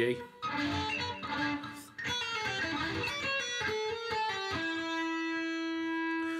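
Electric guitar playing a bluesy single-note lead phrase built on the blues scale, a run of separate picked notes that ends on one long sustained note held through the last second and a half.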